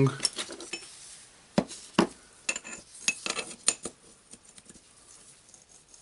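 Small steel washers and bearing parts from a Bosch GBH 11 DE rotary hammer clinking against each other and tapping on a wooden workbench as they are picked up and sorted. Sharp separate clinks come through the first four seconds, then only faint handling.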